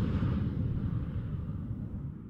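The tail of an intro whoosh sound effect: a low rumble that fades away steadily.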